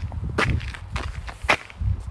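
Footsteps on snow, with two short, sharp snaps about a second apart over a low rumble.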